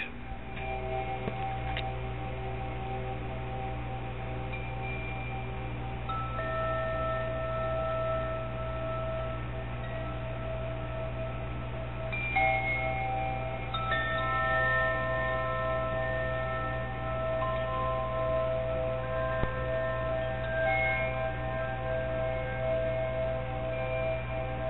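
Chimes ringing: several clear metallic tones at different pitches that sustain and overlap, with new notes coming in every few seconds, over a steady low hum.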